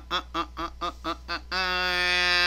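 A man's voice sings or hums a short wordless tune: a run of about seven quick short notes, then one long steady note held at a lower pitch.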